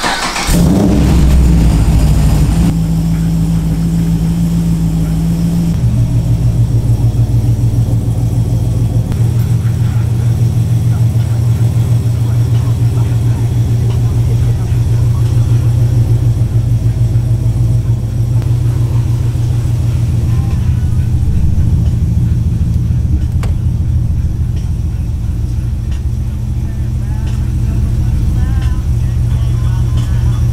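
LS V8 in a swapped Mazda RX-7 FD started: it catches with a loud burst right at the start, then idles steadily, the fast idle dropping to a lower pitch about six seconds in.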